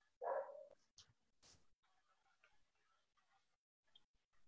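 Near silence on a video-call line, broken once, about a quarter second in, by a single short bark-like sound lasting about half a second.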